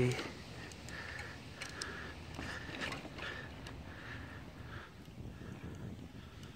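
Trek X-Caliber 7 mountain bike being ridden along a paved street: a steady rolling noise with a short recurring sound about twice a second and a few faint clicks.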